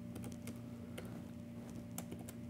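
Typing on a computer keyboard: a run of quick, faint keystrokes over a low steady hum.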